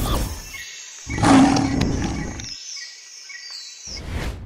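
Title-sting sound effects: a brief whoosh, then a loud animal-like roar lasting about a second and a half, followed by thin high electronic tones, one sliding downward near the end.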